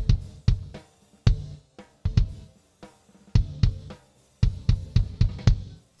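Recorded kick drum track played back through a digital mixer's noise gate, with the snare drum track mixed in as a reference. The irregular hits each die away to near silence before the next, and the gate sounds pretty good but is holding each hit a little too long.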